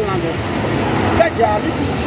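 A man speaking over a steady low rumble.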